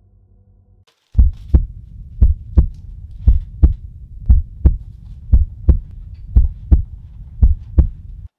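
Heartbeat sound effect: seven lub-dub double beats, about one a second, over a low rumble, starting about a second in after a faint drone stops.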